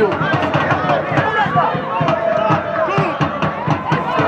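Voices talking and calling throughout, over crowd noise from the stands.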